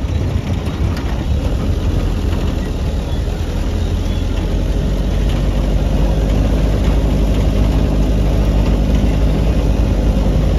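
Steady low rumble of a car driving, engine and road noise heard from inside the cabin on a rough road, growing a little louder in the second half.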